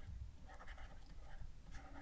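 Faint scratching of a stylus writing on a graphics tablet, in short strokes.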